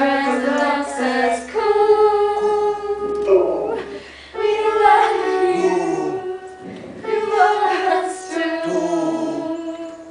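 A woman and a child singing a slow song together in long held notes, with short breaks about four seconds in and again around seven seconds.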